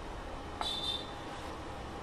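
Steady low background hiss with one brief, soft sound about half a second in.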